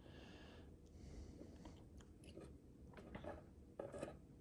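Near silence: room tone with a few faint, soft ticks from the metal nozzle of a tube of liquid electrical tape being worked along the plastic seam of a tail light.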